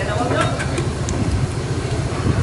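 A steady low engine rumble runs throughout, under faint background voices.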